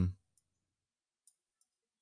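A voice trails off, then near silence broken by three faint, scattered clicks.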